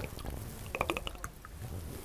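A quick run of small clicks about a second in, from a plastic water bottle being handled and its cap turned after a drink.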